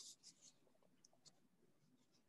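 Near silence, with a few faint taps and rustles near the start: small cardboard boxes being shifted by hand on a cardboard base.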